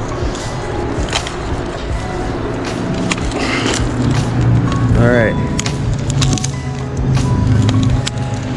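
Dry sticks and branches of a logjam cracking, snapping and knocking underfoot as a person clambers across it, many sharp snaps at irregular intervals.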